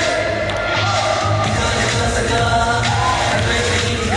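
Male pop group singing an upbeat dance-pop song live into microphones over a backing track with a steady beat.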